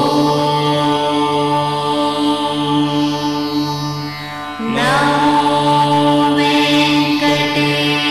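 Devotional music of long, sustained chanted tones over a steady drone; a fresh tone begins about five seconds in, sliding up in pitch as it starts.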